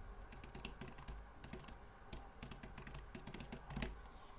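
Computer keyboard being typed on: a quick, irregular run of faint key clicks as a web address is typed out, with a brief pause about halfway.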